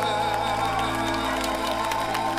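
A live band's long final chord held at the end of a song, with scattered hand clapping from the audience beginning.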